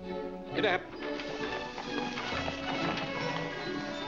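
Orchestral film score, cut through about half a second in by a short, loud, wavering cry that rises sharply in pitch, followed by a busy stretch of clattering sound under the music.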